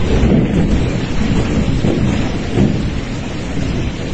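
Windstorm gusts buffeting the microphone in a steady low rumble, with wind-driven rain.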